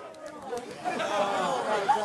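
A roomful of people talking excitedly at once in celebration: overlapping chatter and calls, with no single voice standing out.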